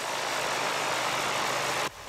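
Pressure washer spraying asphalt pavement: a steady hiss from the water jet over the low hum of its engine, cutting off just before the end.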